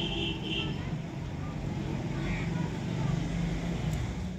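A steady low engine drone runs throughout, with two brief high chirps near the start.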